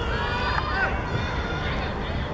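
Several people shouting and calling out at once during an attack on goal at a youth football match, in high, rising and falling shouts over a steady low outdoor rumble.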